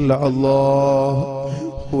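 A man's voice intoning a drawn-out syllable, held level for about a second, then a shorter note that rises near the end, in the chanted delivery of an Islamic supplication (dua).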